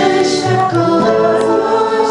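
Women's voices singing a Christian worship song together, accompanied by acoustic guitar and keyboard.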